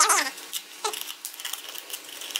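Cardboard box being torn open along its perforated tear strip: a run of short, dry crackles and rips of paperboard.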